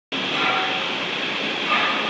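Steady background noise of ventilation and machinery in an industrial building, an even rushing sound with a faint hum in it.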